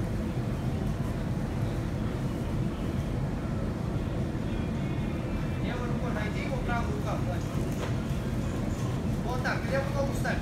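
A steady low rumble of hall noise, with indistinct voices calling out about six seconds in and again near the end.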